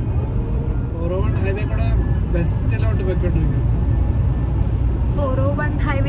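Steady low rumble of a car's road and engine noise, heard inside the cabin at highway speed. A voice comes in over it about a second in and again near the end.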